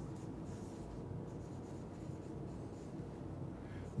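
Marker pen writing on a whiteboard: faint strokes as letters are written.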